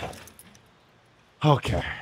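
A light metallic jangle of a cable machine's D-handle and clip at the start, then, about one and a half seconds in, a short strained grunt from a lifter breathing hard at the end of a set of cable tricep extensions.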